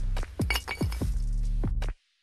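Sound effect of a water jug being dropped: a quick run of clinking knocks in the first second, over steady background music.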